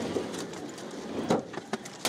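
Stones striking a car, heard from inside the cabin: several sharp knocks on the body and windscreen, the loudest a little over a second in, with two smaller ones near the end.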